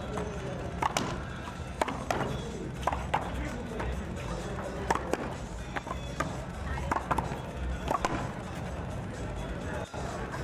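Doubles handball rally: a handball smacked by hand and bouncing off the wall and court, a string of sharp smacks at irregular intervals, roughly one a second, over background music.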